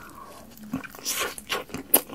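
Close-miked biting and chewing of fried fast food: wet mouth sounds with crunching, and a run of sharp clicks in the second half, the loudest at the very end.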